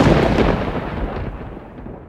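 The rumbling tail of a cinematic boom sound effect, a deep noisy crash with faint crackle, fading away steadily over the two seconds.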